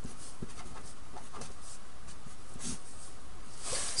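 Faint, irregular scratching of handwriting as numbers are written out, over a steady low hiss.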